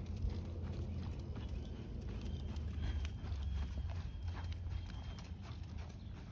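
Hoofbeats of a bay horse ridden over the sand footing of a dressage arena: a steady, even rhythm of dull footfalls.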